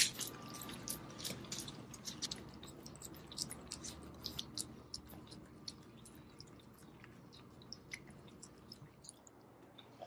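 Two Cavalier King Charles spaniels licking soft raw food off silicone lick mats: faint, wet licking and smacking ticks, frequent at first and thinning out toward the end.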